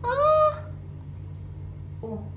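Pomeranian giving one short, high whine, rising at the start and lasting about half a second, as it is being towel-dried.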